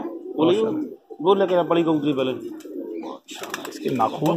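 Domestic pigeons cooing in low, repeated bouts, with a short spell of rustling near the end.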